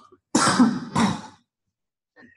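A person coughing twice in quick succession, each cough about half a second long.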